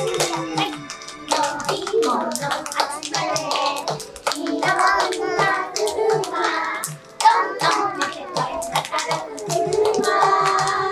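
Hands clapping to a steady beat along with a children's song, with music and singing.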